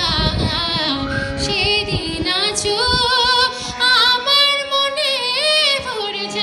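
A woman singing a Bengali song in long held notes with vibrato, over steady sustained harmonium notes.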